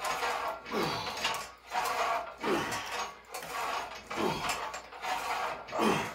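Cable and pulleys of a lat pulldown machine working through repeated reps: a rubbing, rasping mechanical noise that swells with each pull and return, about one rep every second and a half to two seconds. A short falling tone comes with each pull.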